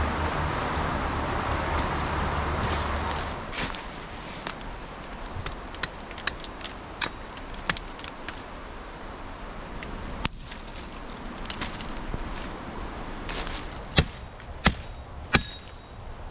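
Creek water rushing steadily for the first few seconds. Then a run of small cracks and knocks from a hatchet working at dead branches, with three loud, sharp strikes near the end.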